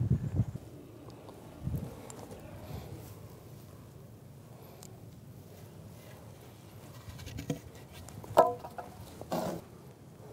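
Quiet outdoor background with a few soft knocks, and near the end two brief pitched calls.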